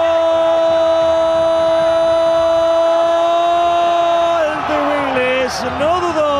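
A football TV commentator's long held goal cry, one steady shout sustained for over four seconds, celebrating a penalty goal. About four and a half seconds in it breaks into excited shouted words.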